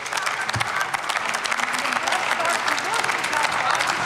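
Applause from members of a parliamentary chamber, many hands clapping at once, mixed with several voices shouting indignant interjections over it.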